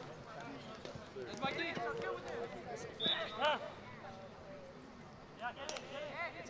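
Players shouting short calls to each other across a soccer field: a few brief, high-pitched shouts about a second and a half in, around three seconds in and near the end.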